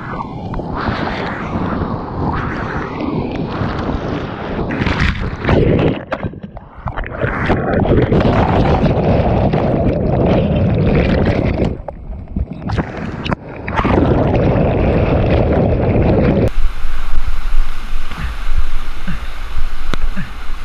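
Whitewater rushing and crashing around a kayak, heard through a boat- or body-mounted action camera, with splashes hitting the microphone. In the middle the sound goes muffled and low while the camera is under water, then clears. Near the end it switches abruptly to the steady rush of a steep rapid.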